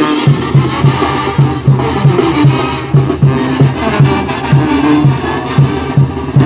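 Mexican brass band (banda) playing: sousaphones pump a steady bass line of short notes, about three to four a second, under drums and percussion.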